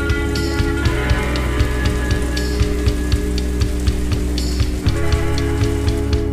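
Slowed-down, reverberant song playing under a steady hiss of rain noise, with regular sharp ticks and held chords over a bass; the chords thin out about a second in and come back fuller near the end.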